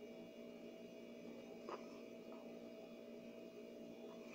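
A faint, steady hum, like an appliance or mains hum, with one faint click a little under halfway through.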